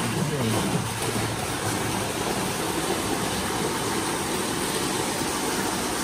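Water gushing steadily into a pool from an artificial rock cascade, churning the surface, heard as an even rushing hiss.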